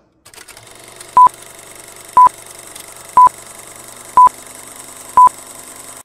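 Five short, loud electronic beeps of one steady pitch, evenly spaced one a second, over a faint steady hiss.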